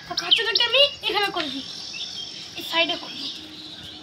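A child's voice calling out in the first second and a half, with a brief call again near the end, over a steady high buzz of insects.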